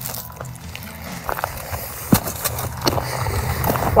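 Footsteps crunching on dry, stony desert ground and brushing through scrub: irregular small crunches and clicks over a low rumble.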